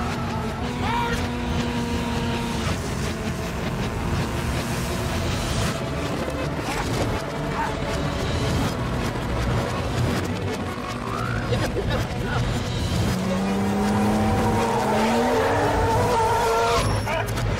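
Film action-chase sound mix: heavy vehicle engines and tyre noise from a tanker truck and a pursuing car, under a music score. An engine note rises in pitch near the end.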